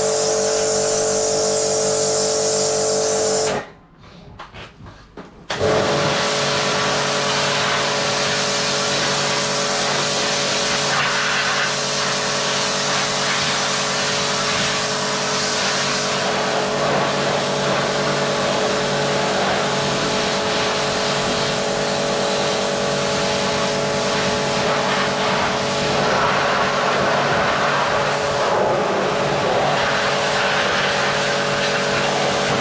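Electric pressure washer running, its pump motor whining steadily under the hiss of the water jet spraying a stainless steel trough. A few seconds in, the motor stops for about two seconds, then starts again and runs on.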